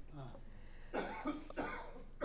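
A faint human cough about a second in, during a pause in speech.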